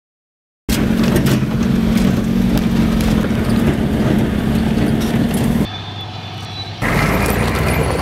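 Heavy tracked vehicle's engine running loudly, cutting in suddenly after a moment of silence and dropping to a quieter stretch just before the end. Near the end a battle tank drives up the slope, its engine joined by a thin high squeal and rattling from the tracks.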